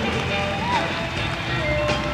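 Live rock band playing the opening of a song, with long held notes over a steady low end.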